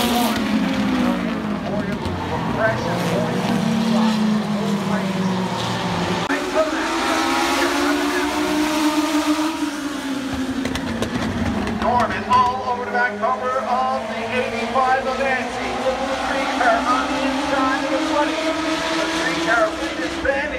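A pack of oval-track race car engines running at speed, their pitch rising and falling as they accelerate and lift through the corners, loudest in the first few seconds.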